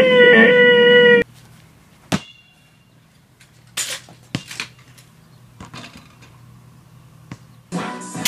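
A voice singing a held note that cuts off abruptly about a second in. Then a quiet stretch with a few scattered clicks and knocks, one of them with a short ring, until music starts just before the end.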